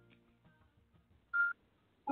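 The last notes of a song fade out, then, about one and a half seconds in, a single short electronic beep sounds once, like a phone keypad tone.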